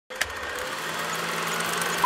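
A steady machine-like whirr with hiss, growing slowly louder, with a single click near the start.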